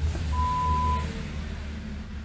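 A single steady electronic beep, one pitch, lasting under a second and starting about a third of a second in, over a low hum.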